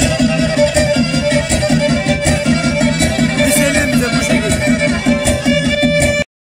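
Black Sea horon folk music with a bowed string lead over a fast, even beat. It plays on without a break.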